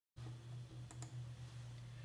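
Faint low steady hum with two faint clicks about a second in.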